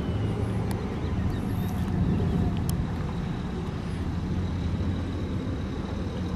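A car driving at a steady speed, its engine and tyres making a continuous low rumble, with a couple of faint clicks.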